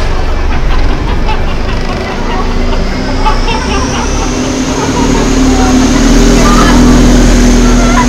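Busy street ambience: passers-by talking over traffic noise, with a motor vehicle's steady low engine hum building from about three seconds in.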